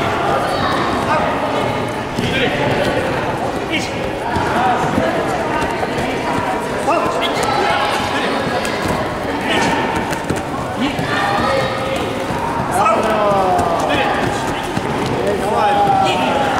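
Several people talking at once in a large sports hall, broken by scattered short thuds and slaps from karate partner drills with gloves on the mats.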